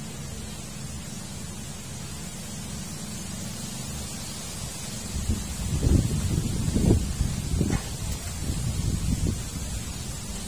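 Wind buffeting the microphone over a steady low rumble, with louder irregular gusts through the second half.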